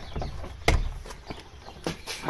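A wooden front door being handled and pushed open, with a few knocks and footsteps; one loud knock comes a little past a third of the way in.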